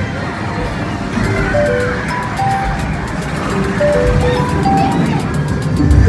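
Arcade game machines playing simple electronic melodies of single beeping notes at changing pitches, over the steady din of a busy game room.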